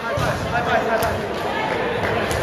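Several people's voices talking and calling out over one another in a gym, with one sharp knock about a second in.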